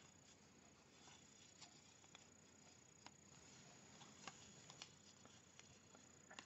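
Near silence, with a few faint, scattered clicks and rubs of large size-15 knitting needles and chunky wool yarn as stitches are cast on.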